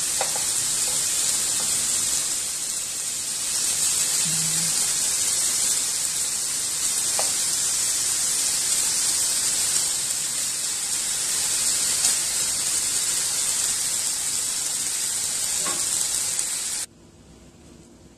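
Kofta meat patties sizzling in a dry nonstick frying pan with no oil added, a steady hiss with a few faint spatula taps. The sizzle cuts off suddenly near the end.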